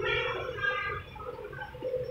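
Children's voices chattering in the background during the first second, then quieter, over a steady low hum.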